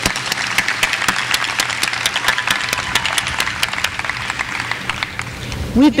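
Audience applauding: many hands clapping in a dense patter that thins out near the end.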